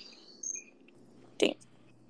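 Faint hiss and hum of an open microphone on a spotty call connection, with a brief high beep-like tone about half a second in and one sharp click about one and a half seconds in.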